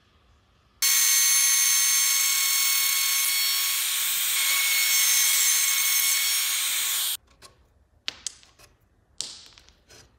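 Compact trim router running at full speed as it cuts wood, a steady high-pitched whine that starts abruptly about a second in and cuts off suddenly after about six seconds. It is followed by a few short, sharp knocks.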